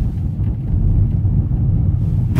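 Steady low engine and road rumble heard from inside the cabin of a moving Opel car.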